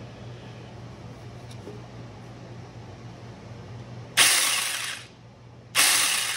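Battery-powered Saker mini chainsaw run in two short bursts, each under a second with about a second between them. The chain spins to spread freshly applied chain oil along the bar.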